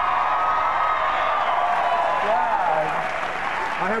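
Studio audience applauding and cheering, easing off near the end as a man starts to speak.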